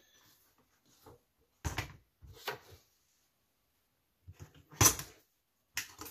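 Handling noise at a leatherworking bench: a few short knocks and rustles as a leather strip and tools are moved about, the loudest about five seconds in as the rotary cutter is picked up.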